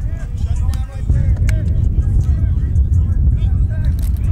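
Background voices of coaches and children talking and calling out, over a heavy, steady low rumble.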